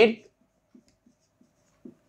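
Marker pen writing on a whiteboard: a few faint, short strokes as letters are written.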